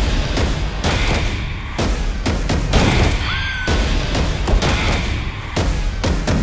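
Dramatic trailer score with deep booms and a run of sharp gunshots and impacts. A short whistling tone rises and levels off about three seconds in.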